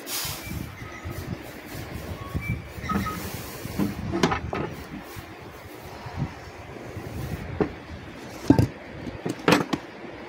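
Loose dry casting sand pouring out of a tipped steel drum into a steel box, a steady rushing hiss as the lost-foam flask is emptied. A few knocks of the metal drum, the loudest twice near the end as it is handled.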